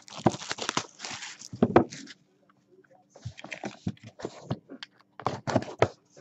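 Cardboard trading-card hobby box being unwrapped and opened by hand: irregular rustling, scraping and clicking of plastic wrap and cardboard, with a brief pause in the middle.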